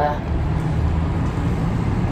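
Steady low rumble inside a cable car gondola as it climbs.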